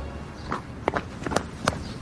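Quick footsteps on asphalt, about three steps a second, as someone runs or hurries up.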